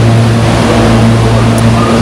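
Trains standing at a station platform, their engines and equipment idling: a really loud, steady low hum with a noisy rush over it.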